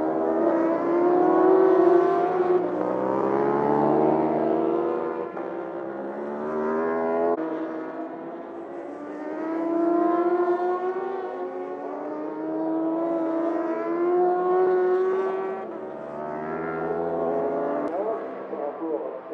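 Racing superbike engines at high revs as bikes pass one after another, their pitch climbing through the gears and dropping away, the sound swelling and fading several times.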